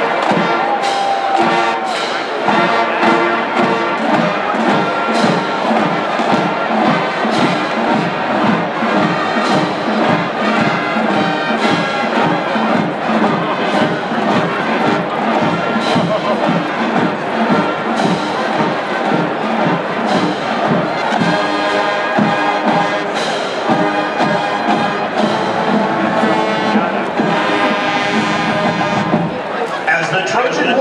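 College marching band playing: brass (trumpets, trombones, sousaphones) over a steady drum beat.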